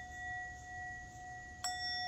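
Small metal singing bowl ringing on with a steady, clear tone after being struck with a wooden striker, then struck again near the end, which renews the ring.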